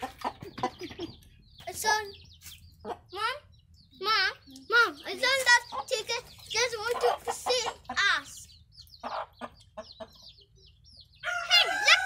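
A hen and her chicks calling: a string of short clucks and peeps with brief pauses between them.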